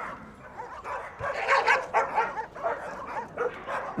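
A large pack of dogs barking and yipping, many voices overlapping; it starts sparse and gets busier from about a second in.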